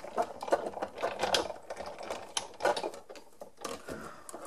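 Big Shot die-cutting machine being hand-cranked, its rollers drawing the cutting plates, with a steel star die and cardstock between them, through the machine with a steady run of small mechanical clicks and rattles.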